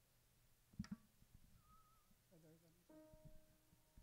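Two short knocks of sheet music handled at a music stand about a second in, then a faint hummed note, then a single piano note held quietly from about three seconds in, giving the singer his starting pitch.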